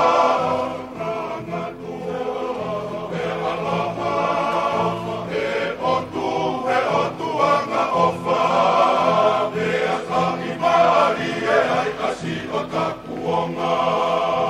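A group of men singing a Tongan song together in several voices, with sung phrases that rise and fall continuously.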